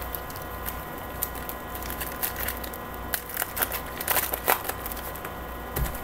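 Topps Chrome trading cards being shuffled and handled by hand: quick, scattered soft clicks and rustles of the stiff cards sliding and snapping against each other, busiest in the middle, over a steady faint electrical hum.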